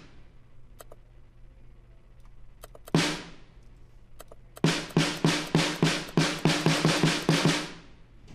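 Sampled snare drum in the Addictive Drums software played on its own: one hit about three seconds in, then a run of about fourteen quick hits, roughly five a second, from about halfway through. The snare is heard through its channel EQ while the lows are being cut.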